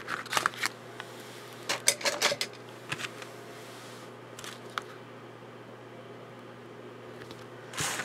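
A cluster of short clicks and paper rustles as craft materials and tools are handled on the table, with a few single clicks later on, then only a steady low hum.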